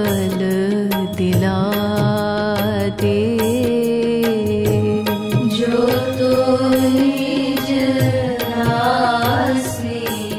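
Devotional Hindi bhajan music: a wavering, chant-like sung melody over a steady held drone, with regular percussion strokes.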